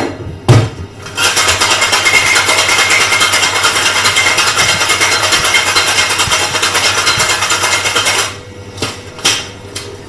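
Metal cocktail shaker shaken hard, ice rattling fast and evenly against the tins for about seven seconds. A couple of sharp metal knocks come just before the shaking starts, and another knock comes near the end.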